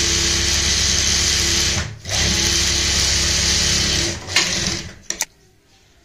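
Sewing machine running at a steady speed, stitching rows across a pleated fabric cuff. It runs in two stretches with a brief pause about two seconds in, then stops about four seconds in, followed by a few short clicks.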